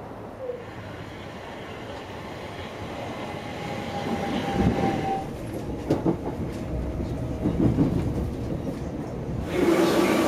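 Electric commuter train running on the track, heard from inside the carriage: a steady rumble that builds up, with the wheels knocking over rail joints several times and a faint steady whine.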